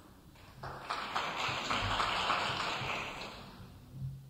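Audience applause that swells about half a second in, peaks, then dies away within about three seconds.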